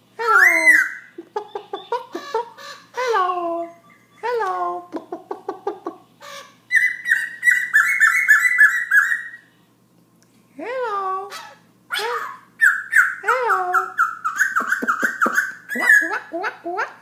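Black-throated laughingthrush singing a varied song: loud downslurred whistles and a quick run of clicks, then long rapid trilled phrases in the middle and again near the end, with a short pause about ten seconds in.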